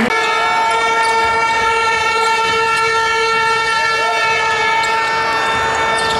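A horn sounding one long, steady, unbroken note for about six seconds, over crowd and court noise in a large hall.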